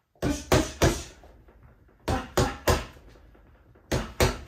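Punches landing on a Quiet Punch doorway-mounted punching bag: two quick one-two-three combinations (jab, cross, lead hook), each three thuds about a third of a second apart. The first comes just after the start and the second about two seconds in, with a further strike at the very end.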